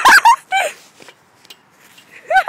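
A girl's high-pitched giggling, a quick run of short rising-and-falling notes that dies away within the first second.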